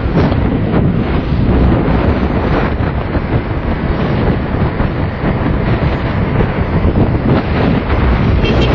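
Wind rushing and buffeting the microphone of a camera carried on a moving motorbike, mixed with road and engine noise.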